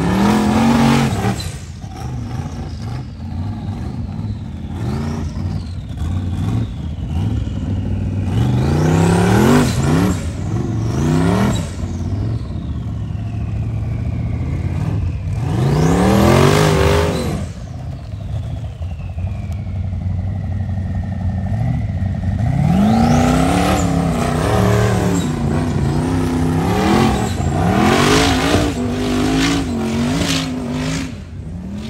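Rock bouncer buggy's engine revving hard in repeated bursts as it climbs a steep dirt and rock hill, dropping back between each one. Between the bursts a high whine slides slowly down in pitch, and the last several seconds bring a run of closely spaced revs.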